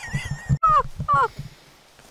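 Two short, high-pitched laughs, each falling in pitch, about half a second apart, after a moment of low rumbling bumps from the camera being handled.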